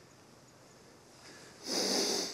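Near silence, then about a second and a half in, one short, sharp breath through a man's nose.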